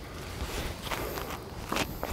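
Sneakers shuffling and stepping on a hard tennis court, with a few soft scuffs about a second in and near the end.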